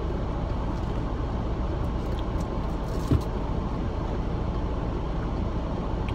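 Steady low hum of a car idling, heard from inside its cabin, with a brief short low sound about three seconds in.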